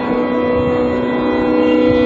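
Carnatic vocal concert music: a long, steady held note over the sruti drone, with soft mridangam strokes beneath.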